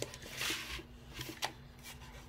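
Paper rustling as a paperback picture book's page is turned and pressed flat by hand, with a brief rustle about half a second in and a couple of sharp little clicks.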